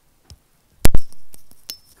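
Two sharp, loud knocks close together with a short ringing tail, then a faint click and a brief high peep near the end.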